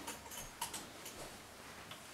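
Quiet room with a few faint, light clicks in the first second.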